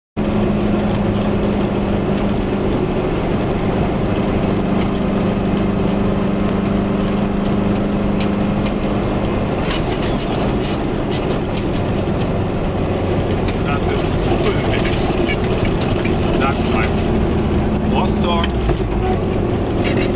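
Goggomobil's small two-stroke twin engine running steadily as the car drives along, heard from inside the car together with road noise.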